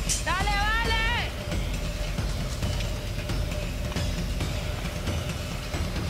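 A single high-pitched shout, lasting about a second, comes just after the start. A steady low rumble and a faint held hum continue underneath.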